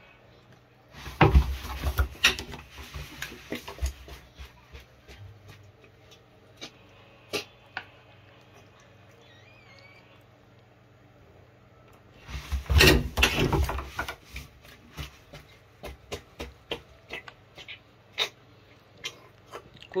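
A pet crocodilian chewing and crushing feed chicks in its jaws. There are two loud bouts of crunching and snapping, about a second in and again about twelve seconds in, with scattered sharp clicks of the jaws between.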